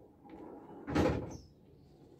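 A pool ball knocking once, sharply, about a second in, on a blackball pool table.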